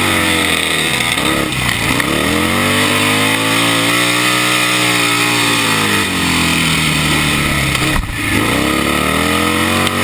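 Sidecar speedway outfit's engine at race speed, heard from onboard: its pitch climbs for about four seconds and then falls away. It drops out briefly about eight seconds in and climbs again.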